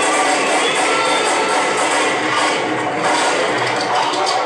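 Grindcore band playing live: a loud, dense wall of distorted guitar and drums.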